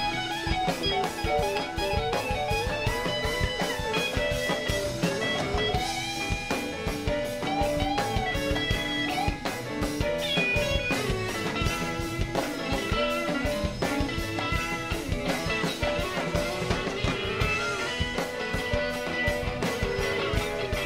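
A live rock band: a lead electric guitar plays bending, wavering notes over a steady drum kit beat.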